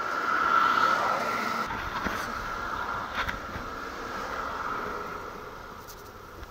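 A vehicle passing on the nearby road: a steady road noise that swells about a second in and then slowly fades away.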